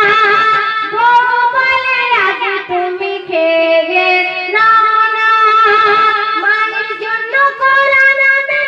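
A woman singing a Bengali Islamic gojol into a microphone, amplified live. She holds long sustained notes that shift pitch every few seconds, with a falling melismatic run about two seconds in.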